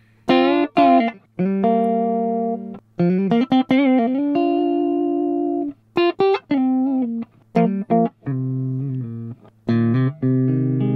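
Clean electric guitar through the Brainworx RockRack amp-simulator plugin on its Clean 800 setting: split-coil neck pickup, guitar volume turned down, dry with no delay. A run of chords and single notes, some held about a second, each stopping abruptly.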